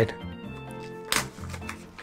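Faint background music with steady notes, and a brief sharp crackle of a foil pouch being torn open a little over a second in, with softer rustling just after.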